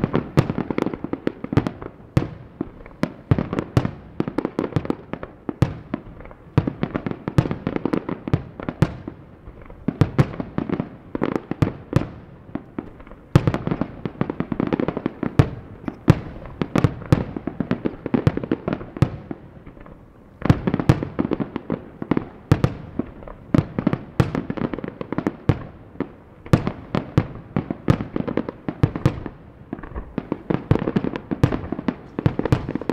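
Fireworks finale: aerial firework shells bursting in a dense, continuous barrage, several bangs a second, with sudden louder surges about halfway through and again a few seconds later.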